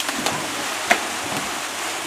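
Swimming-pool water splashing as a person jumps in and swimmers churn the water, with one sharp snap about a second in.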